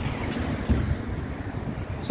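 Wind buffeting the microphone, a low, uneven rumble over faint street noise.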